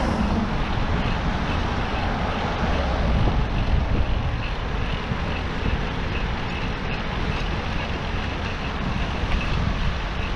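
Steady low rumble of wind on the microphone and road traffic, heard from a moving bicycle, with a faint, regular high ticking through the second half.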